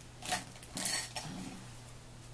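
A few light clinks and knocks of small hard objects being handled, as makeup tools are picked through, over a low steady hum.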